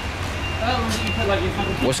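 Indistinct voices talking over a steady low vehicle engine hum, with a short high beep repeating on and off about twice a second, like a reversing alarm.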